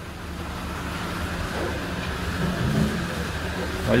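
A motor vehicle's engine running nearby, swelling a little over the first three seconds and then easing off, over steady low background noise.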